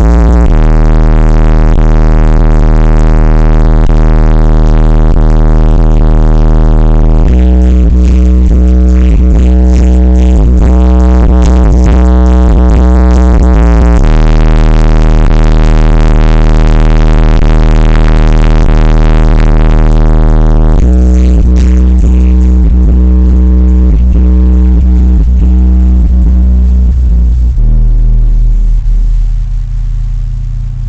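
Car subwoofers playing bass-heavy electronic music very loudly: DC Audio Level 5 15-inch subs on a Stetsom 14k amplifier wired at 0.7 ohm. Long, deep bass notes shift to a new pitch about every seven seconds.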